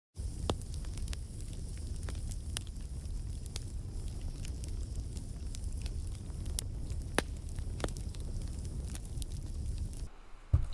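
Fire burning: a steady low rumble of flames with scattered sharp crackles and pops at irregular moments.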